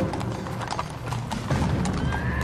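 Hooves of a group of horses clip-clopping over a low rumble, growing louder about a second and a half in.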